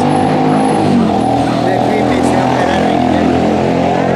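A motor vehicle's engine running steadily close by, a loud even drone that holds without rising or falling.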